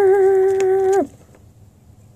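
A girl's voice holding one long, steady note that drops in pitch as it breaks off about a second in, followed by quiet room tone.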